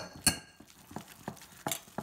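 A metal spoon knocking and clinking against a glass mixing bowl while a vegan burger mixture is mixed by hand. There are a few light clicks, with the sharpest just after the start.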